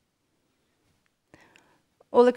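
Near silence: room tone, broken by a faint short sound about one and a half seconds in.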